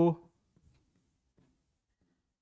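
The end of a man's spoken word, cut off within the first quarter second, followed by near silence.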